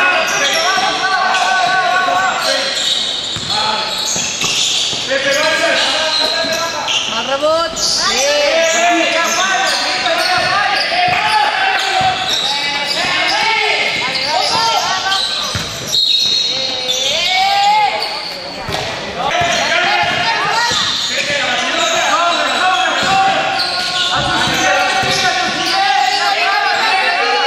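Basketball game in play: a ball bouncing on the court among players' calls and shouts, echoing in a large hall.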